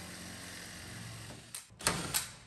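Cordless drill running steadily, drilling out a pop rivet that holds a luggage-rack slat to a car's deck lid. Near the end come a few sharp knocks as the slat is worked loose.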